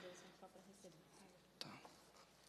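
Near silence in a meeting room, with faint low voices in the background and a brief soft sound about one and a half seconds in.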